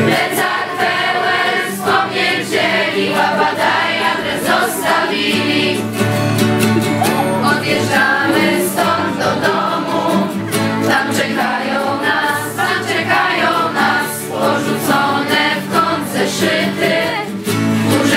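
A group of young voices singing a song together, accompanied by an acoustic guitar.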